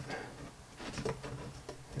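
Light, scattered clicks and ticks from a hex screwdriver working a screw through stacked carbon fiber frame plates and arms.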